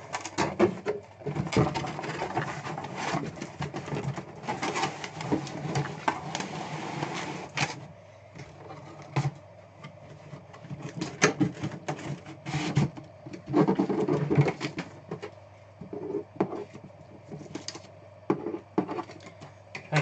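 Cardboard boxes being handled and packed: flaps scraping and folding, with knocks and thumps, coming in bursts with short pauses between them.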